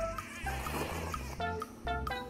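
Ramen noodles being slurped in from a spoon: a hiss of about a second starting about half a second in, over background music with a plucked melody and a bass beat.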